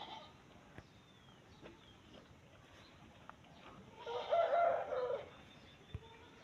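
A farm animal's call, one wavering pitched cry lasting about a second, about four seconds in, over a quiet background with a few faint small clicks.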